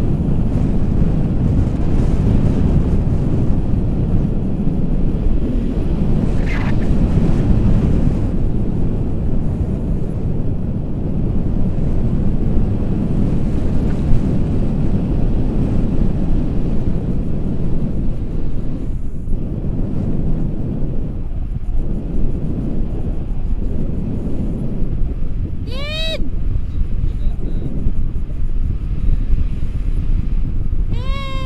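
Wind rushing over a camera microphone in paraglider flight, a heavy steady buffeting. About 26 seconds in, a short high-pitched cry that slides downward.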